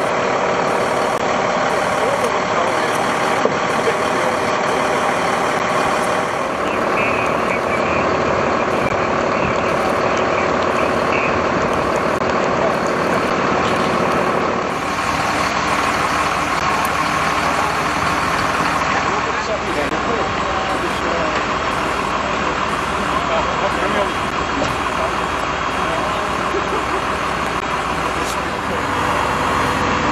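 Heavy diesel truck engines running steadily, with people talking in the background. The sound shifts once, about halfway through.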